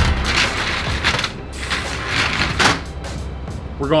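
Aluminium sliding screen door being pushed open, with a few short scrapes and knocks as it runs on its track and as mask and fins are handled.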